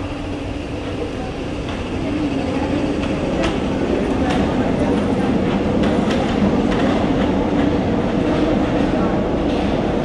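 Paris Métro train pulling out of the station and picking up speed: a steady motor hum under a rumble that grows louder from about two seconds in, with scattered sharp clicks as it gathers pace.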